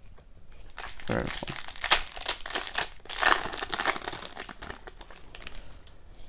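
Foil wrapper of a hockey card pack crinkling as it is torn open and peeled off the cards, with a burst of crackling that is loudest about two and three seconds in and dies away near the end.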